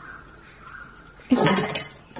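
A single short, harsh animal call about a second and a half in, after a quiet start.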